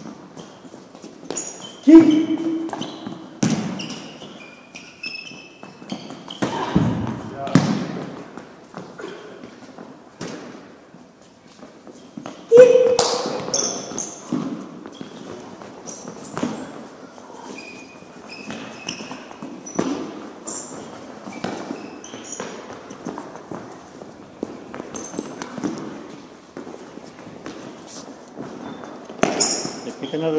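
Futsal balls being struck and thudding on gloves and the floor of a gymnasium, with sneakers squeaking on the court; the two loudest hits come about 2 seconds and 12 seconds in.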